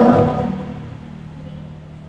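A man's voice trails off in the first half second, then a pause filled by a low steady hum and room noise.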